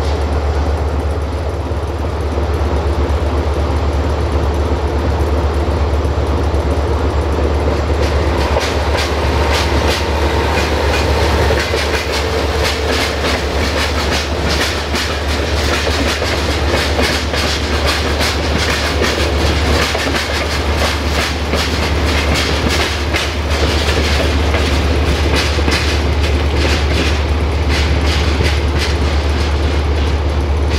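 CFR 060-DA (LDE2100) diesel-electric locomotive's Sulzer engine running with a steady low rumble. From about eight seconds in, a VT614 diesel multiple unit's wheels clatter rapidly over rail joints and points as it passes and pulls away.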